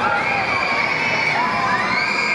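Riders on a spinning chair-swing ride screaming and shouting together, many overlapping high shrieks and held cries rising and falling without a break.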